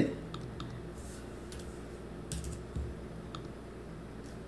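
Faint, scattered clicks of a computer mouse and keyboard as settings are changed on a computer, a few single clicks with a quick cluster a little past the middle, over a low steady room hum.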